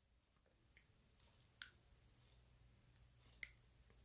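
Near silence: room tone, broken by three faint, brief clicks.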